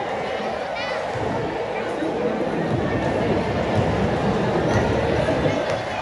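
Spectators chattering in a packed gymnasium: a steady hubbub of many overlapping voices, growing a little louder about two seconds in.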